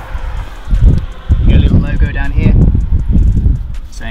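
A man's voice, with wind rumbling on the microphone in gusts.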